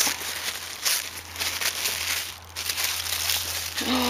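Irregular rustling and crinkling of materials being handled, as the next laces are picked up.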